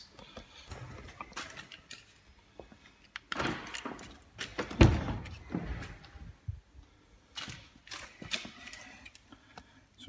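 A BMW M4's door being opened: scattered clicks and rustles, then a single sharp thunk about five seconds in as the latch releases.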